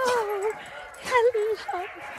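Alaskan Malamute sled dog whining in wavering, high-pitched whimpers: a longer whine at the start, then shorter ones about a second in and again near the end.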